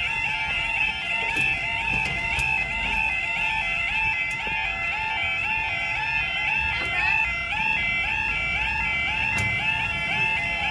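Railway level crossing alarm: an electronic yodel warble repeating quickly and evenly with no break, warning that the barriers are down and a train is due. A low rumble runs underneath.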